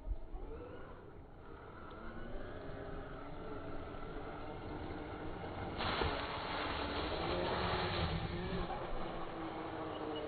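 Electric drivetrain of a Traxxas X-Maxx RC monster truck whining as it accelerates toward the listener, the whine rising in pitch and growing louder. From about six seconds in, a louder rush of noise sets in over it, from the tyres churning over dirt and snow.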